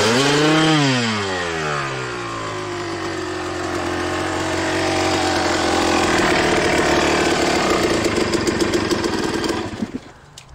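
Suzuki RM250 two-stroke dirt-bike engine revving up and back down, then running steadily at low revs. Its note turns uneven near the end before the engine cuts out abruptly.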